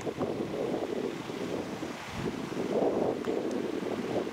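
Wind buffeting the microphone, an uneven low gusting noise that swells and eases, strongest about three seconds in.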